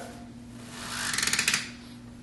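A rolled silk wall scroll being twisted tighter by the knob on its roller, making a dry, crackling rasp that swells about a second in and stops about half a second later. The sound is the roll being drawn tight, which keeps the silk from creasing.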